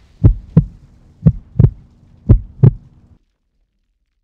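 Heartbeat sound effect: three double thumps about a second apart over a faint low hum, stopping a little after three seconds in.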